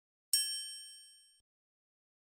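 A single bright, bell-like ding struck about a third of a second in, its high ringing tones fading away over about a second: a chime sound effect for a logo reveal.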